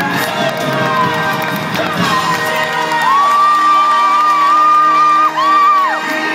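Circus music playing while the audience cheers. About three seconds in, a long high note is held for over two seconds, breaks briefly, then resumes.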